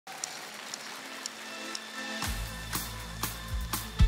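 Live band playing the intro of a pop song. For the first two seconds there are soft sustained chords with light high ticks about twice a second. About two seconds in, the bass and drums come in together on a steady beat of about two strikes a second.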